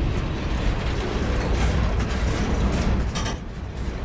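Freight cars rolling past close by: a steady low rumble of steel wheels on the rails, broken by metallic clanks and rattles. The sharpest clank comes a little after three seconds in.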